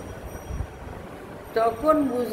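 A pause in a woman's talk with only a low background rumble and a short low thump about half a second in; she starts speaking again near the end.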